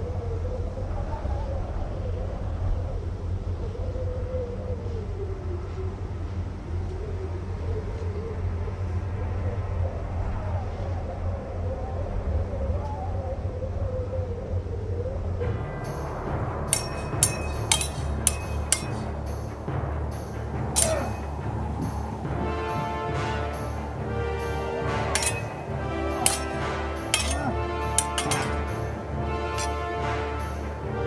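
Film score music over a low steady rumble. From about halfway, sabre blades clash metal on metal in a series of irregular sharp clinks over the music.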